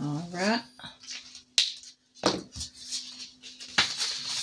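A short rising vocal sound at the start, then paper and paper money being handled and rustled, with three sharp clicks as a card is taken off a clipboard.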